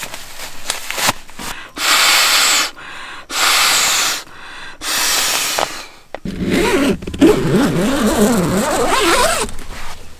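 Camping pillow being blown up by mouth: three long breaths rush into the valve, each about a second long, with short pauses between them. From about six seconds in comes a wavering pitched sound over a low hum.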